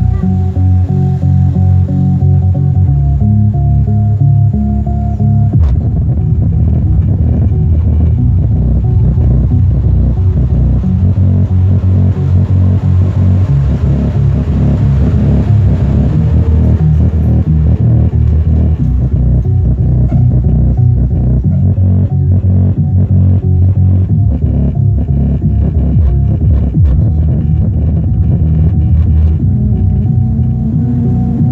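Loud, bass-heavy music played through an ADS AB1000 active car subwoofer, its woofer putting out deep, sustained bass notes. The unit is working again after being repaired from a total failure.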